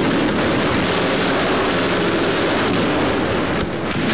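Sustained rapid automatic gunfire, the shots running together into a dense, continuous volley with no break.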